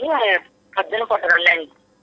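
Speech only: a caller's voice heard over a telephone line, thin and cut off in the highs, in two short phrases.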